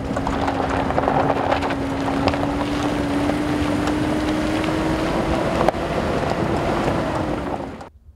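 Camouflaged military off-road vehicle driving on a gravel dirt track: a steady engine hum whose pitch slowly rises, under a heavy rumble of road and wind noise. It cuts off sharply just before the end.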